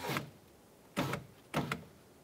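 Power window motor in a 2001 Honda Civic's front driver door raising the glass, running steadily and stopping just after the start, then two short bursts about half a second apart as it is briefly run again.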